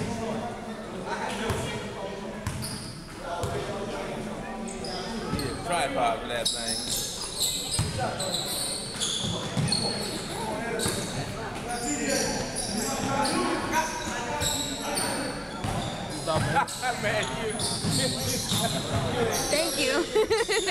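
Basketball bouncing on a hardwood gym floor during play, repeated thuds echoing in the hall, with many short high squeaks of sneakers on the court from about six seconds in.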